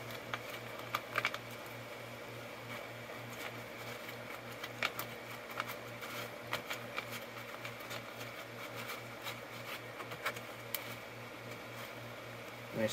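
Small clicks and ticks of a plastic bottle cap and plastic airline tubing being handled and pressed together, over a steady low hum.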